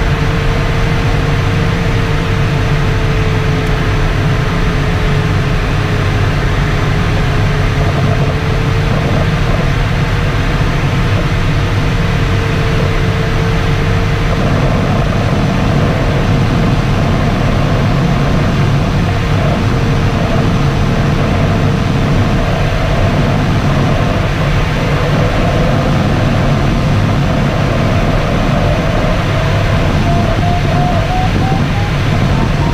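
Steady rush of airflow inside a glider cockpit in flight, with a single continuous electronic variometer tone that wavers slightly in pitch and rises near the end.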